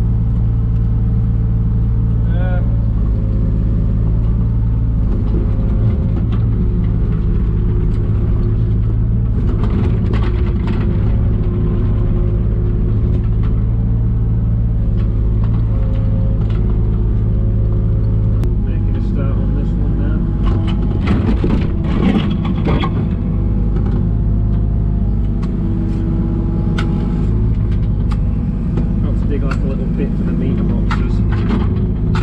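A 3-tonne JCB mini excavator's diesel engine running steadily under load, heard from inside the cab, with tones that shift in pitch as the arm works. Clanks and scrapes of the bucket digging soil and stones come in clusters, around ten seconds in and again from about twenty seconds.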